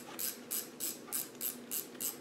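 Ratchet wrench clicking evenly, about three clicks a second, as it is worked on a bolt.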